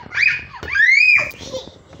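A toddler girl's voice: a short vocal sound, then a high-pitched squeal that rises and holds for about half a second, about a second in.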